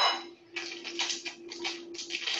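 Crinkly rustling of a small sugar packet being handled and opened over a mixing bowl, with a brief clink at the start. A steady low hum runs beneath.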